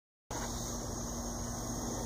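Steady outdoor background noise, a faint even hiss with a low hum under it, starting a moment after a brief silence.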